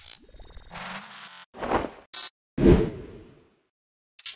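Sound-effect sting for an animated logo: a faint electronic shimmer, then a swish, a brief bright burst, and a fuller whoosh with a low hit near the end that fades out.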